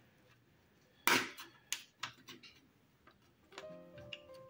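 A sharp click about a second in, then a few lighter clicks and taps of circuit board against plastic as the control module's display board is slid into its front panel. Faint background music comes in near the end.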